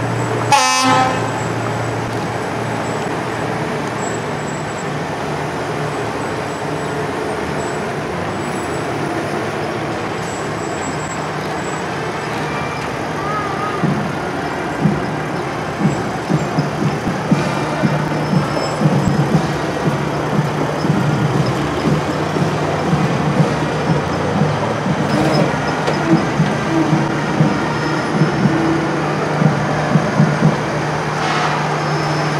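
Fire apparatus driving past slowly in a parade: a short horn blast about half a second in, over a steady low engine drone. From about halfway through, rougher, uneven engine noise builds as the trucks pass.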